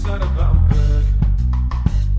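Instrumental passage of a band's song without vocals: a drum kit plays a steady beat of bass drum and snare hits over held bass notes and a pitched melodic part.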